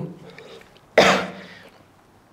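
A man's single short cough, about a second in: one sudden loud, unpitched burst that dies away within half a second.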